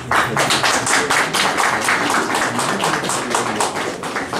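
A small group of people clapping by hand, the separate claps heard quickly and unevenly, several a second.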